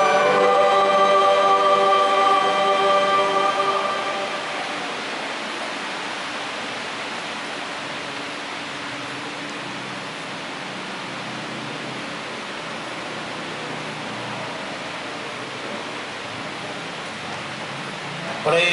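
A choir holds the closing chord of a hymn, which fades out about four seconds in. After that only a steady low hiss of room noise remains.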